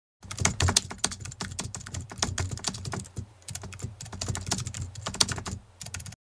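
Rapid, irregular clicking like typing on a keyboard, over a low hum. It eases off briefly about halfway and stops abruptly at the end.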